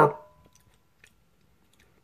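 A man's voice trailing off on a drawn-out word, then near silence with a few faint, scattered clicks.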